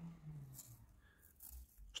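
Faint scraping of a wooden pencil being turned in a small handheld metal pencil sharpener, its blade shaving off wood in a few short scratches.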